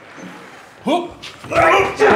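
A short yelp-like cry about a second in, followed by a louder burst of voices and laughter.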